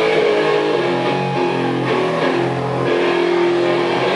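A live band playing, led by electric guitars holding and changing chords over steady low notes.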